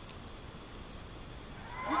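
Hushed game-show studio: a faint hiss with a thin steady high-pitched whine during the suspense pause. Right at the end, cheering and a shout break out as the winning X is revealed.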